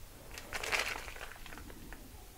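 Plastic packet of chopped pistachios crinkling in the hand as the nuts are shaken out, in a brief rustle starting about half a second in and followed by a few faint ticks.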